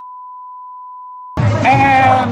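A censor bleep: one steady pure beep tone that replaces all other sound for about a second and a half, then cuts off as voices return.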